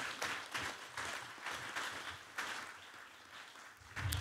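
Audience applauding, many hands clapping, thinning out and fading away near the end.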